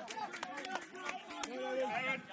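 Several men's voices calling out at once across a football pitch, with a few sharp clicks in the first second and a half.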